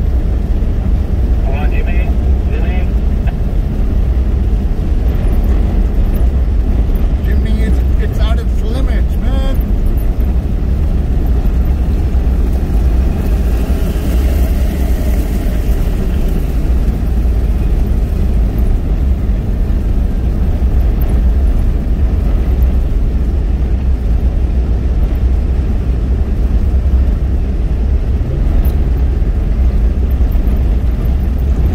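Cabin noise of a car driving along a sandy desert dirt track: a steady, loud low rumble of engine, tyres and road.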